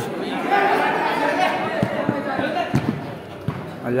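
A futsal ball being kicked during play, giving a few dull thuds in the second half, amid background voices of players and spectators in a roofed hall.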